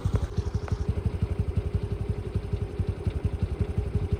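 A small engine running, a low, even thumping about ten times a second with a steady hum above it.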